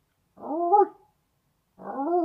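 A man's voice imitating an animal's call: two short cries, each rising then falling in pitch, about a second and a half apart, the second starting near the end.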